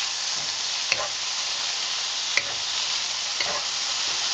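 Eggplant and onion sizzling steadily in hot oil in a wok over high heat, with a wooden spatula scraping the pan three times as the food is stirred.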